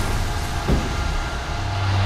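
A steady rumbling noise with a hiss over it, and a low hum that swells about one and a half seconds in.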